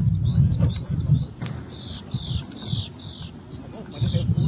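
A small songbird repeating a short, high, down-slurred note about three times a second in a steady series.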